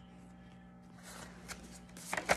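Faint rustling and light ticks of cards being handled, starting about a second in, over a low steady hum.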